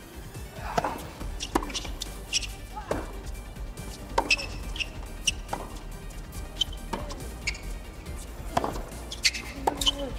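A tennis rally on a hard court: short, sharp racquet-on-ball strikes and ball bounces, one every second or less, over background music.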